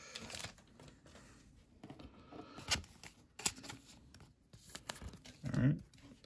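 Pokémon trading cards being handled and gathered up on a desk: soft sliding and scraping with a few sharp clicks scattered through.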